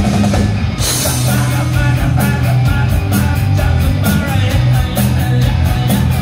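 Live rock band playing: electric guitar, bass guitar and drum kit. The cymbals drop out for a moment at the start and come back in just under a second in.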